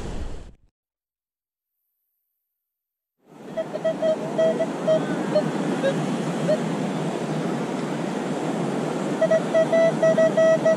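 Minelab Equinox metal detector giving short repeated beeps on a buried target near the end, over steady wind and surf noise. About half a second in the sound drops out to total silence for about three seconds.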